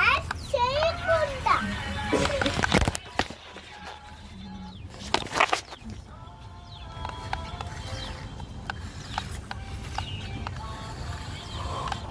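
A young child's high voice squealing in the first couple of seconds, then faint music-like tones, with two brief noisy bursts in between.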